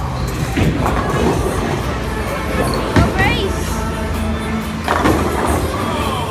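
Busy bowling-alley din: background music playing under people's chatter, with a few sharp knocks, the loudest about three seconds in.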